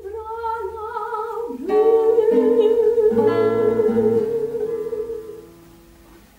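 Soprano singing two long held notes over plucked guitar accompaniment: a shorter note, a brief breath, then a longer note held for several seconds as the guitar plays under it. The phrase fades out about a second before the end.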